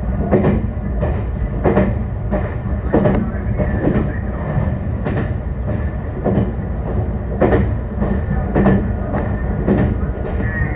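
Meitetsu electric train running along the Bisai Line, heard from inside the car, with a steady low running hum. Its wheels click over the rail joints about a dozen times at uneven intervals.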